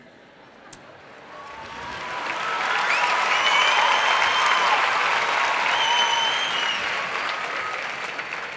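Large audience applauding: the clapping builds over the first couple of seconds, holds, then tapers off near the end.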